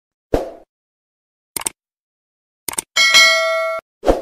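Subscribe-animation sound effects: a low thud, then two pairs of quick clicks, then a bright notification-bell ding that rings on several pitches for under a second and cuts off suddenly.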